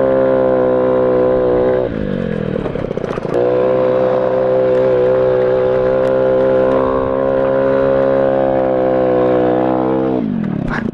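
Honda Ruckus 50cc scooter engine running at high revs under throttle. About two seconds in the revs fall as the throttle eases; a second later it opens up again and holds steady. The revs drop once more near the end.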